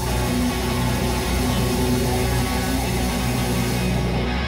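Live band music led by an electric guitar, with bass and drums.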